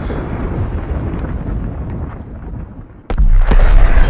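Deep, drawn-out rumble of a fragmentation grenade explosion, easing off towards three seconds. Then a second, louder blast starts abruptly with a sharp crack and a heavy low rumble.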